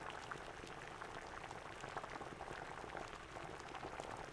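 Faint audience applause: a steady patter of many hands clapping.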